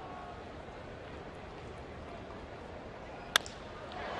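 Steady ballpark crowd murmur, then a single sharp crack of a wooden bat hitting a pitched baseball about three seconds in.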